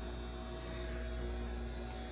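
Steady low electrical hum with a few faint constant tones above it, unchanging throughout, with no clicks or handling knocks.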